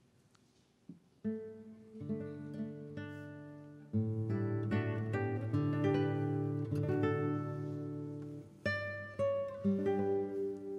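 Ensemble of nylon-string classical guitars playing a slow passage of plucked notes and chords. The notes begin about a second in and fill out into fuller, louder chords at about four seconds.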